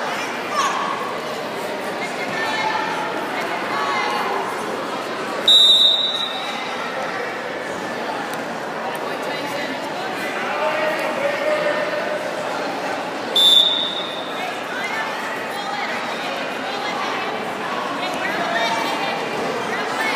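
Two short, shrill referee's whistle blasts about eight seconds apart, which stop and restart the wrestling. Voices and shouting carry through the gym hall throughout.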